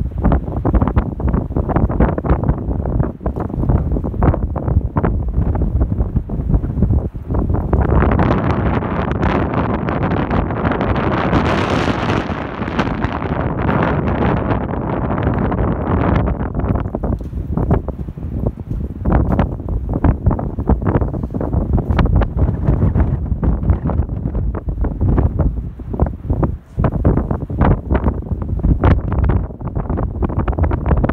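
Strong wind buffeting the microphone in a continuous rumble, swelling into a louder, hissier gust for several seconds in the middle.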